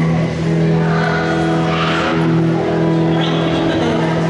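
Amplified electric guitar and bass guitar holding long sustained notes, a steady ringing chord, as a live band eases into a song.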